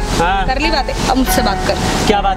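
People's voices in a heated argument, over quiet background music.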